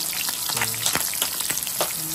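Food frying: a steady sizzle with frequent sharp pops and crackles.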